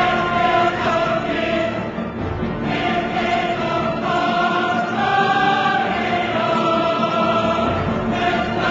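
Background music: a choir singing long, held notes that change every second or so.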